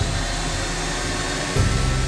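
Table saw running with a steady whir, under dark trailer music. A deep low drone comes in about one and a half seconds in.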